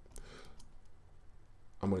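A faint computer mouse click shortly after the start, over low room tone, as a plugin device is folded and unfolded in music software; a man's voice starts near the end.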